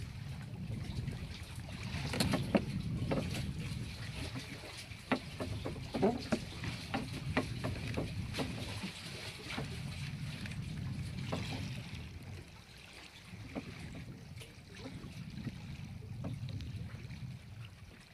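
Steady low rumble of wind and water around a small wooden fishing boat at sea, with a run of sharp knocks and clicks from about two to twelve seconds in.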